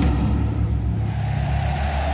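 Deep, steady rumbling drone with sustained low bass tones: the documentary's underscore or sound design.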